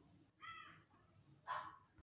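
Two faint, short bird calls about a second apart, the second one hoarser than the first.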